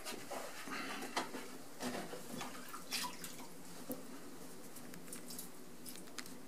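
Wet handling of a porcelain pot on a potter's wheel: irregular splashes and drips of water and slip as hands and a sponge work the wet clay. They are busiest in the first three seconds and sparser after, over a faint steady hum.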